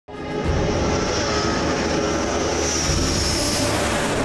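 Jet fighter engine running, a dense roar with a high turbine whine that rises slightly and then fades, mixed with background music.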